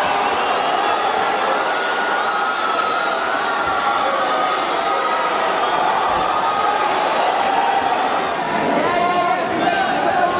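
Crowd of fight spectators shouting and cheering, many voices overlapping into a steady din, with single shouts held above it.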